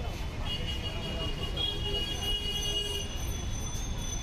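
Roadside street noise: a steady low traffic rumble with people talking in the background, and a thin high whine for a couple of seconds in the middle.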